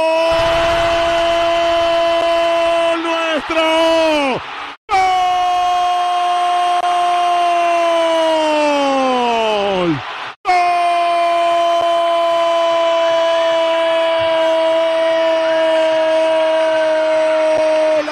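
A radio football commentator's long, shouted goal cry ("gooool"), held on one high pitch in three breaths of about five, five and eight seconds, each sagging downward as the breath runs out.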